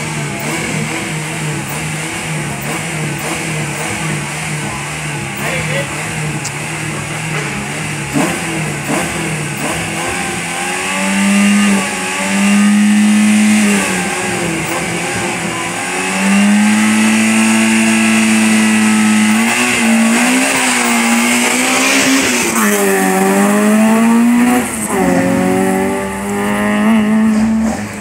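Race car engine idling at the start line, then held at high revs from about eleven seconds in. Towards the end the pitch dips and climbs several times.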